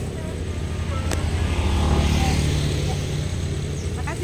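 A motor vehicle passing on the road, its low engine rumble swelling to a peak about halfway through and then easing off. A single sharp click about a second in.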